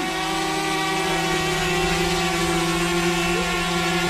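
Small folding quadcopter drone hovering close by, its propellers giving a steady whine.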